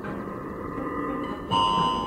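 Electroacoustic tape music: a dense, grainy low texture, joined suddenly about three-quarters of the way through by a louder cluster of steady, bright sustained tones.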